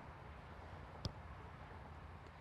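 Faint open-air background noise with a single short knock of a soccer ball being struck about a second in.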